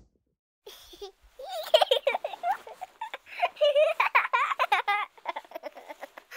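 High-pitched voice sounds: a rapid run of short calls with wavering pitch, starting about a second and a half in.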